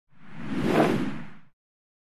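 A single whoosh sound effect for a logo intro. It swells up to a peak just under a second in and fades away by about a second and a half.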